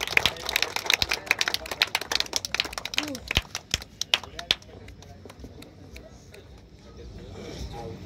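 A small group of people clapping by hand, fast and dense for the first four seconds or so, then thinning to a few scattered claps.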